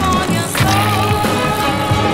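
Music track playing over the raw sound of a BMX bike being ridden: tyres rolling on hard ground with a sharp hit about half a second in.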